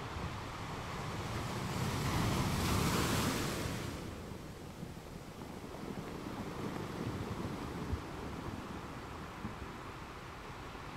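Wind blowing through forest foliage and buffeting the microphone with a low rumble, swelling to a loud rushing gust about two to four seconds in, then easing.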